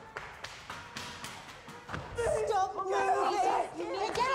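A string of short thumps, then, from about halfway, a woman shouting and crying out in distress, her voice wavering sharply in pitch.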